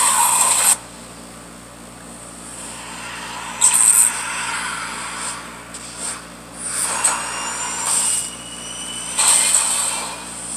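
Movie-trailer sound effects: a string of sudden rushing whooshes and hits, some with faint whistling sweeps, heard thinly through a portable DVD player's small speaker.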